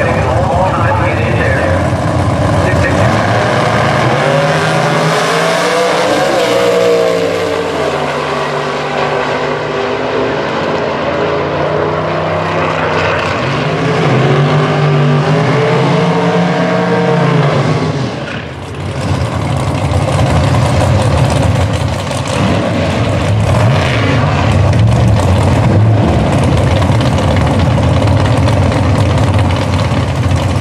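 Top Sportsman drag cars' V8 engines running loud and revving up and down at the strip, with a brief drop in loudness about two-thirds through before the engines come back up.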